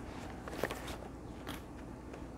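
Plastic Blu-ray and DVD cases being handled and set down, giving a few light clacks: the loudest a little over half a second in, another about a second and a half in.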